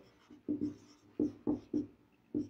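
Marker pen writing on a whiteboard: four short separate strokes as letters are drawn.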